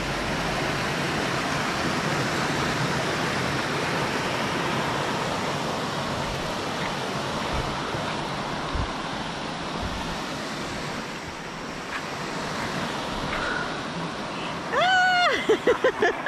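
Steady rush of a rocky stream pouring over boulders in small cascades. Near the end a person's voice calls out briefly.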